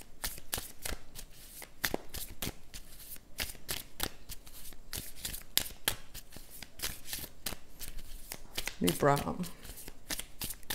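Tarot deck being shuffled by hand: a fast, uneven run of card flicks and clicks, several a second. A brief murmur of voice about nine seconds in.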